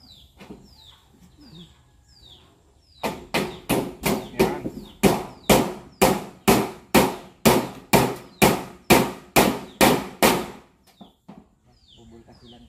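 Hammer driving nails to fasten a corrugated metal roof sheet to its wooden frame: a steady run of about twenty blows, roughly three a second, starting about three seconds in and stopping a little before the end. A small bird chirps over and over throughout.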